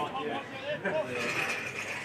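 Indistinct voices of spectators and players calling out and talking, overlapping, with no clear words.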